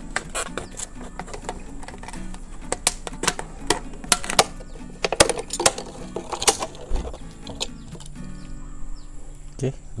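Thin plastic water bottle being cut with a utility-knife blade and handled: irregular sharp clicks and crackles of the plastic as the blade cuts through and the bottle flexes, over background music.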